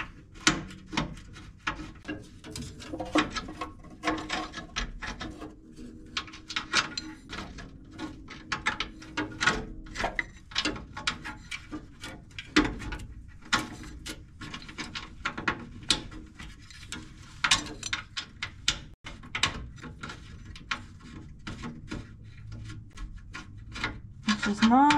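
Metal oil cooler hard line being worked by hand against its fitting on a radiator, as it is angled to line up for threading in: a long run of irregular light clicks, taps and scrapes.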